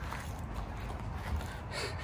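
Quiet outdoor background noise: a low, steady rumble with no distinct event.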